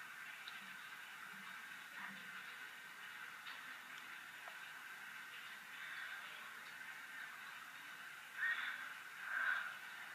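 Faint steady hiss with two brief soft sounds near the end, handling noise as a lip balm tube is held and worked at the lips.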